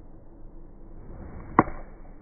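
Golf iron swung down with a short swish, striking the ball off the turf with one sharp click about one and a half seconds in.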